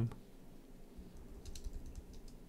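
Typing on a computer keyboard: a few faint keystrokes about one and a half seconds in.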